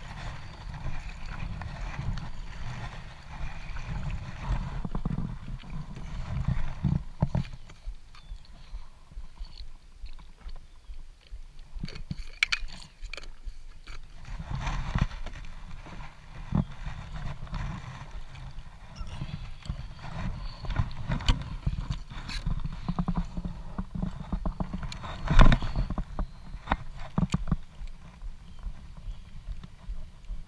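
Kayak out on choppy water in a headwind: steady wind rumble on the microphone and water lapping the hull. In the first half there are paddle strokes, and throughout there are scattered knocks against the hull, the loudest about 25 seconds in.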